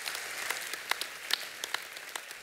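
Audience applauding, easing off near the end.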